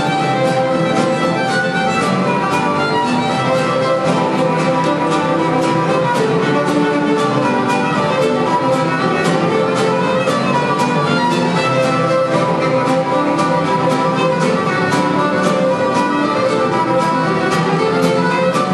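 Texas-style contest fiddling: a fiddle playing a fast tune over acoustic guitar accompaniment strummed in a steady beat.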